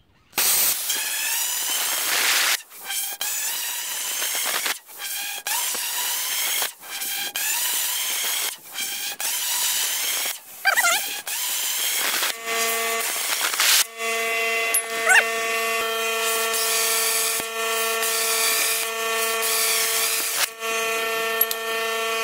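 Hypertherm Powermax 45 plasma cutter torch cutting through 5-inch steel pipe: a loud, rough hiss from the arc that cuts out briefly and restarts many times along the cut. From about twelve seconds in, a steady pitched whine sits over the hiss.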